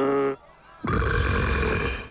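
Cartoon sound effects: a held, slightly falling yell breaks off about a third of a second in. After a short pause, a monster's roar over a low rumble lasts about a second, from the animated Hydra.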